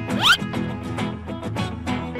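Bouncy instrumental background music with steady notes. About a quarter second in comes a quick rising zip-like sound effect.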